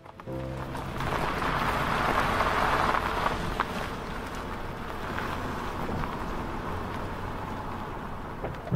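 An SUV rolling slowly up to a covered entrance: a steady rush of tyre and engine noise, loudest about two to three seconds in. A short piece of music ends just as it begins.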